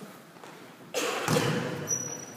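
A sudden thud about halfway through, with a spectator's exclaimed "Oh" over it.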